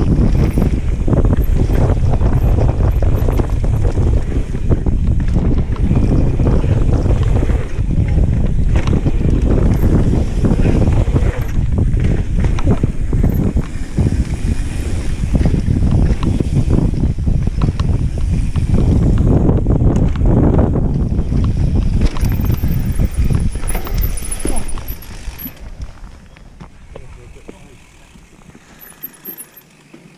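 Riding noise from a mountain bike going fast down a dirt trail: wind buffeting the camera microphone, tyres rumbling on dirt, and repeated knocks and rattles from the bike over bumps. The noise drops sharply near the end as the bike slows.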